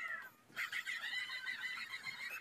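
Cartoon theme-song soundtrack, thin and without bass: a high-pitched cartoon voice slides down in pitch, then holds a high, wavering note.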